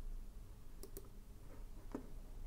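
Computer mouse clicks: a quick double click a little under a second in, then a softer click near the end, over a faint low hum.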